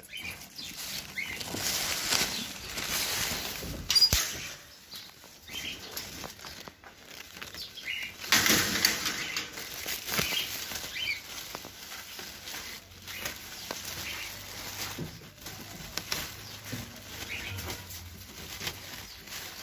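Birds' wings flapping in irregular bursts, with a sharp knock about four seconds in.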